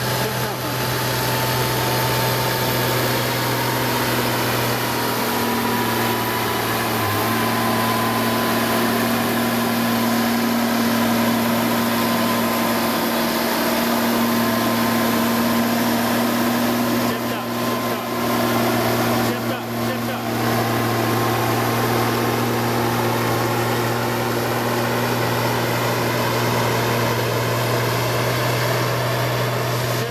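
John Deere 9520T track tractor's diesel engine running under steady load, pulling a sled down the track. It holds a constant drone, with a fainter high whine slowly rising in pitch.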